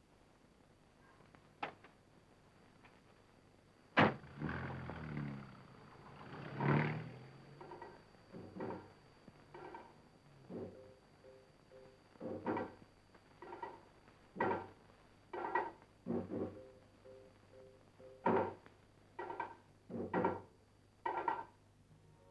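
A sharp thud, then an animal giving short calls over and over, about one a second.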